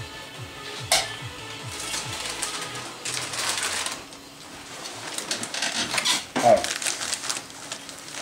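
A wall light switch clicks about a second in. A crisp packet then rustles and crinkles as it is handled, over faint background music.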